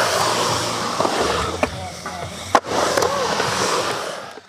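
Skateboard wheels rolling on a concrete skatepark floor with a few light knocks, and one sharp clack of the board about two and a half seconds in.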